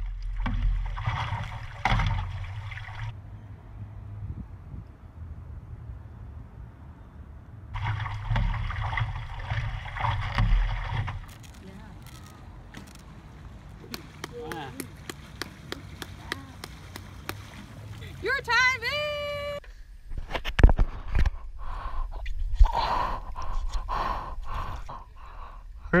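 Water splashing and sloshing around stand-up paddleboards as paddle blades dig in, with stretches of low rumbling noise. Short voice calls and shouts come in the second half.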